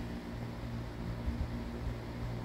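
Steady low hum with a faint hiss underneath: background noise in a small room.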